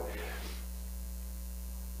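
Steady low electrical mains hum with a faint hiss, no voice.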